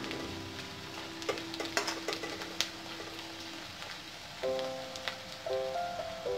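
Chopped onion, green chilli and garlic sizzling in oil in an iron kadhai, with a few light clicks in the first seconds, under background music whose notes change about halfway through.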